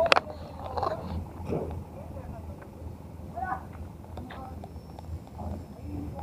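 Indistinct voices of people talking over a steady low rumble, with one sharp click just after the start.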